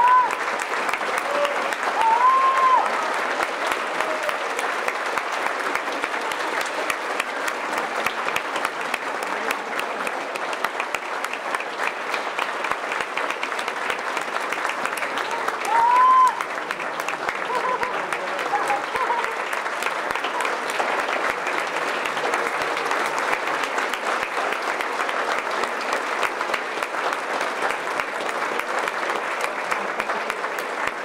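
Concert audience applauding steadily and densely. Short cries from the crowd rise above the clapping three times: right at the start, about two seconds in, and about sixteen seconds in.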